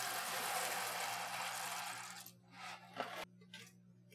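Dry mini penne pouring from its cardboard box into a pot of boiling water, a steady rushing rattle that stops a little over two seconds in. A couple of light knocks follow, with a low hum underneath throughout.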